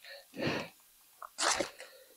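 A person's breath: two short breathy puffs, about half a second and a second and a half in, like an exhale and a sniff.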